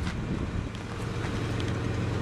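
Steady low hum of a vehicle engine idling, with light wind on the microphone.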